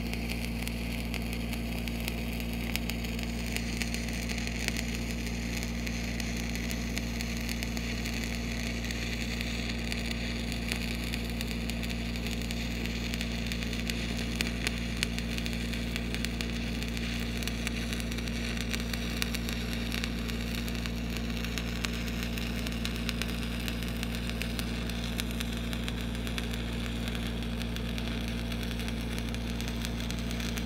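Stick (shielded metal arc) welding on heavy steel pipe: the electrode's arc crackles steadily, over a steady low hum.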